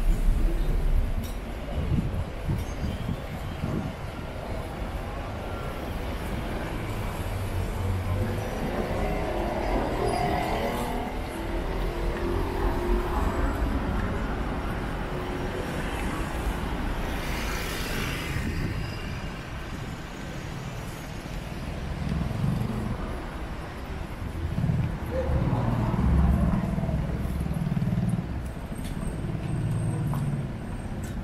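Town street ambience with cars passing along the road.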